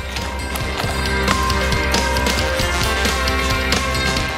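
Instrumental broadcast music with a steady beat.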